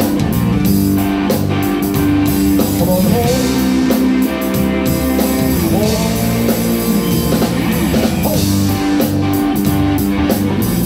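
Live blues-rock band playing: electric guitar lead lines with bent notes over bass, keyboards and drums.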